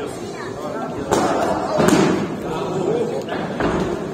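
Kickboxing kicks and punches landing with sharp smacks: two loud ones a little under a second apart near the middle, amid voices shouting.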